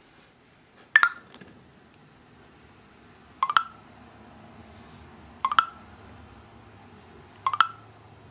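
Short electronic chirps from a Samsung Intrepid phone's speaker, four times, about every two seconds: the TellMe voice app's cue that it is still transcribing a spoken text message.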